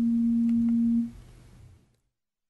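A single steady low tone, ringing from the meeting room's sound system, holds for about a second after the speaker stops. It then fades away, and the audio cuts to dead silence near the end.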